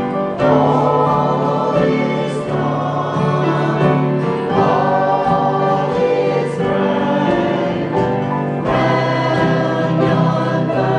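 Small church choir of mixed men's and women's voices singing a hymn together, in held, sustained phrases.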